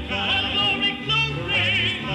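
Male gospel vocal group singing in close harmony, held notes with wide vibrato over a low bass part.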